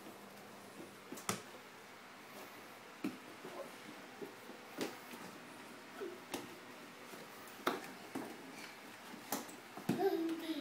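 Scattered soft knocks and taps of a barefoot toddler's hands and feet on wooden stair treads as he climbs, about one every second or two, with a few brief faint vocal sounds.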